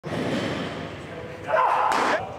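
Men's voices calling out, with a single sharp pop near the end as a thrown fastball smacks into a catcher's leather mitt.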